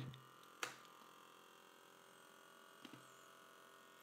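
Near silence with a faint steady mains hum. A single computer mouse click comes about half a second in, with a much fainter tick near the end.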